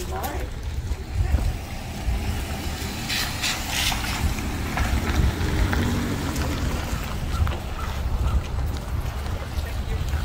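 Wind rumbling and buffeting on a handheld camera's microphone outdoors, a low rumble that swells and drops unevenly.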